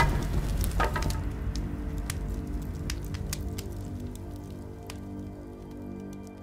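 A burst of flame with a sharp crack, then scattered crackles and pops over a low rumble that fades away as the fire burns, with sustained music underneath.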